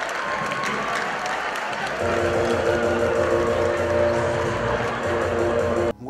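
Crowd applauding and cheering at a live show; about two seconds in, loud music starts with held notes over a steady bass, and it cuts off suddenly near the end.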